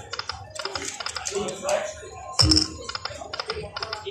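High Stakes poker machine running through a spin cycle: rapid clicks and ticks as the reels spin and stop. About two and a half seconds in, a louder burst with a short high electronic tone and a low thump marks the start of the next spin.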